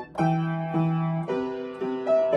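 Piano played in simple chords with a melody on top, the notes changing about every half second, with a brief gap just after the start.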